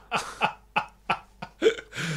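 A man laughing in a string of short breathy bursts, about six in two seconds.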